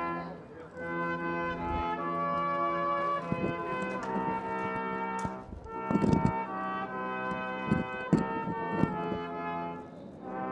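Live brass ensemble of trumpets and lower brass playing a slow piece in held chords. A few short sharp knocks sound over the music in the second half.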